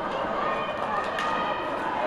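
Ice hockey rink sound from the stands: a steady hum of spectators' voices, with a few sharp clicks from play on the ice.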